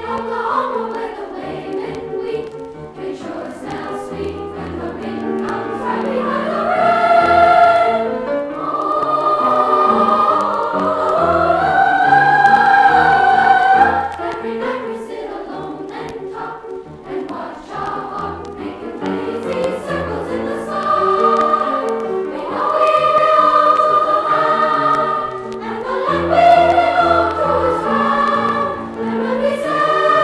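A school glee club choir singing in sustained phrases that swell and fade, played back from a vintage vinyl LP.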